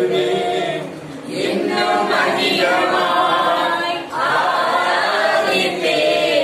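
Worship singing: voices holding a melody in long phrases, with short breaks about a second in and about four seconds in.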